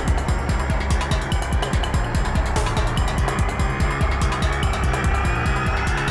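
Tense drama background music with a fast, even pulsing beat over a low sustained drone, and a tone slowly rising in pitch through the second half.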